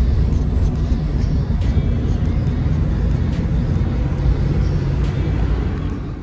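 Steady low road rumble inside a moving car's cabin, with a few faint knocks as the phone is handled.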